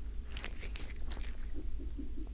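Close-miked mouth sounds of a cat: a quick run of wet clicks and crunches about half a second in, lasting under a second, then softer repeats near the end.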